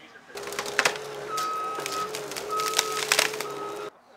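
A tracked skid-steer loader with a tree-shear attachment running, with a steady whine and a higher tone that comes and goes three times, and sharp cracks over it. It starts suddenly just after the start and cuts off just before the end.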